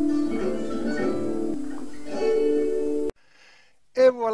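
Recorded French branle dance tune with a psaltery playing sustained melody notes. It cuts off abruptly about three seconds in, followed by near silence.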